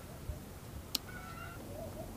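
Short high animal calls in the background, with a single sharp click just before a second in.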